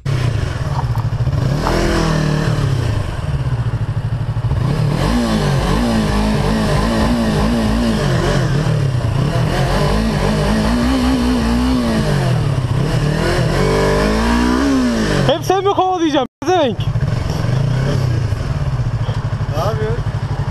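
Sport motorcycle engine heard from the rider's helmet camera, its revs rising and falling again and again as the bike is ridden slowly through traffic. Near the end the sound changes abruptly and cuts out for a moment.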